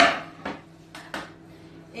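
A kitchen knife and wooden cutting board knocking on a wooden butcher-block counter: one loud, ringing clack at the start, then three lighter clicks within the next second.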